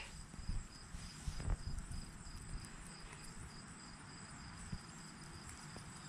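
Faint, steady high-pitched chirping of insects, over a soft low rumble, with one soft knock about one and a half seconds in.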